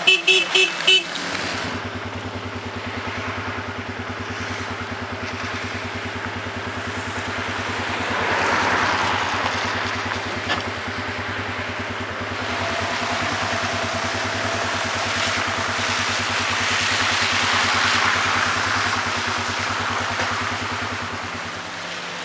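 A car horn tooting about five times in quick succession, then a vehicle engine's steady hum, with the hiss of tyres on wet, slushy road swelling twice as traffic moves.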